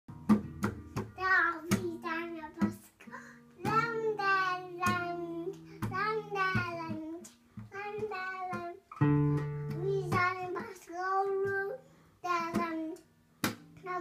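A young child sings wordless, wavering phrases while striking and strumming the strings of a nylon-string classical guitar. The strums come unevenly between the sung notes, and the strings are left ringing.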